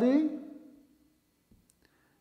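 A man's word trails off, then a marker tip makes a few faint clicks against a whiteboard as it writes, about a second and a half in.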